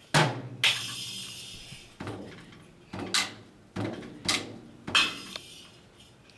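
A child hitting a toy drum kit with drumsticks: about eight uneven strikes on the drums and its small cymbal, each left to ring and fade away.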